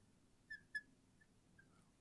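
Faint short squeaks of a marker dragged across a glass board while a word is written, two close together about half a second in, with near silence between.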